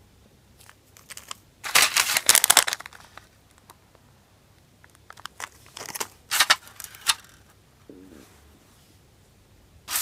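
Foil sachet and plastic packaging of a Kracie Nerunerunerune candy kit crinkling as they are handled. There is a loud burst of crackling about two seconds in, and shorter crackles again around five to seven seconds.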